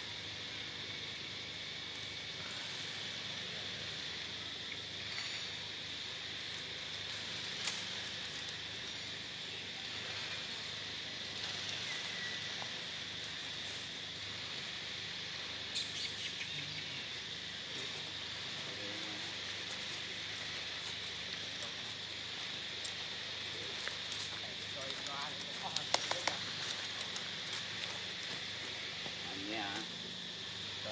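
Outdoor forest ambience with a steady high-pitched insect drone, broken by a few faint clicks and short voice-like sounds near the end.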